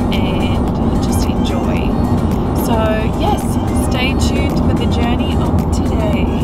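Steady road and engine noise inside the cabin of a moving car at highway speed, with faint voices over it.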